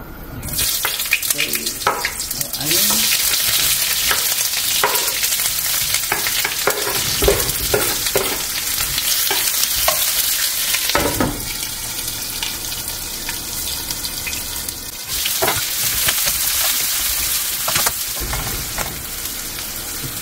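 Sliced onions sizzling as they are tipped into a hot wok and fried, stirred with a stainless-steel ladle that scrapes and clinks against the pan. The sizzle starts about half a second in, grows louder a couple of seconds later, and eases off for a few seconds in the middle before picking up again.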